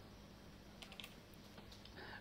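Near silence: faint line hiss with a low hum, and a few faint clicks about a second in.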